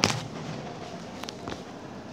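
A single sharp crack right at the start, then a low background with two faint ticks a little past a second in.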